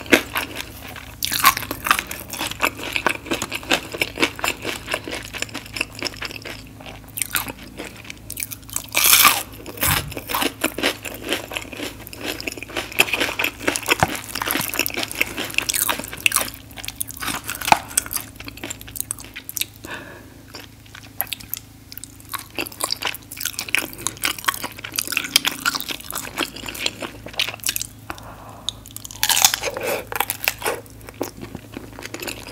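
Close-miked eating of crunchy nachos: tortilla chips bitten and chewed with many crisp crackles and crunches, and a louder crunch about nine seconds in.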